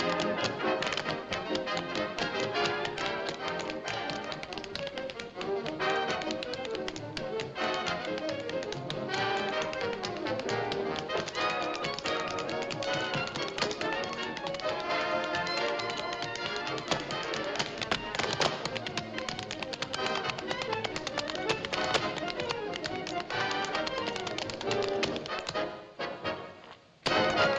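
Two dancers' tap shoes rattling out fast, dense rhythms on a hard dance floor over band music.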